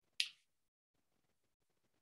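A single brief, sharp click about a fifth of a second in; otherwise near silence.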